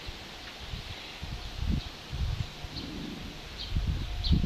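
Outdoor garden ambience with faint rustling and irregular low rumbles of wind on a phone microphone.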